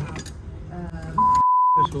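A censor bleep: one steady, high-pitched beep about two-thirds of a second long, starting just over a second in, dubbed over a spoken word while the rest of the sound is muted.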